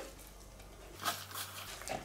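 Faint scraping of a silicone spatula on plastic, working moist grated vegetables out of a chopper bowl and into the mixing bowl, starting about a second in.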